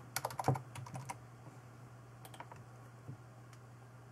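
Computer keyboard typing: a quick burst of keystrokes entering a number, then a few separate single clicks about two and three seconds in.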